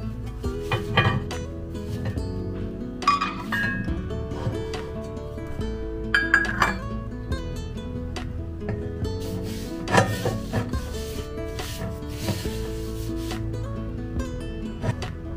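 Background music, with a few knocks and scrapes of pre-seasoned cast iron pans being lifted and stacked into one another; the loudest knock comes about ten seconds in.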